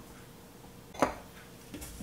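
Quiet room tone with one sharp clink of kitchenware against a stainless steel mixing bowl about a second in, and a softer tap near the end.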